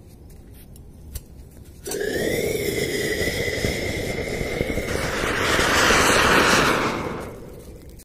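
An anar (flower-pot fountain firework) burning inside a lidded stainless steel canister. A sudden loud hiss with a steady whistling tone starts about two seconds in. About five seconds in it swells into a louder rushing, then fades near the end.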